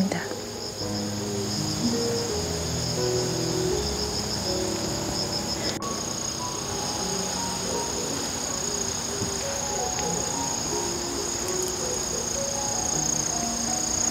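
Steady high-pitched chirring of insects, with soft instrumental background music of slow melodic notes underneath.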